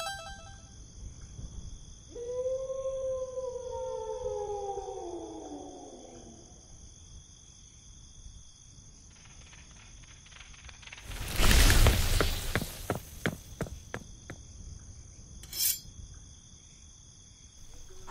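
Steady chorus of crickets chirping. About two seconds in, a long call slides slowly down in pitch over about four seconds. Around eleven seconds in comes a loud burst of rustling with clicks, and a short sharp sound follows near the end.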